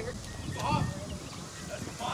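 Indistinct background voices talking over a low outdoor rumble, with no distinct impact.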